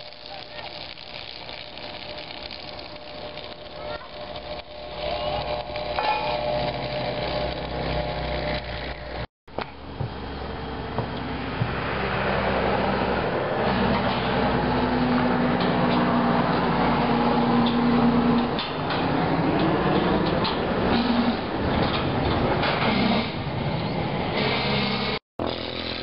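Welding on steel angle-iron door track: crackling, hissing arc noise over a steady machine hum, in separate clips joined by two brief cuts.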